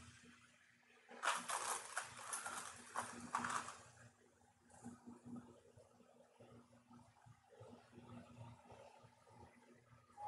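Handling of quilted fabric and a zipper: soft rustling and small irregular taps and clicks, loudest from about one to four seconds in, then fainter.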